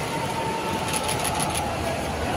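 Steady background noise of a busy airport terminal concourse, with a faint steady high hum and a quick run of light clicks about a second in.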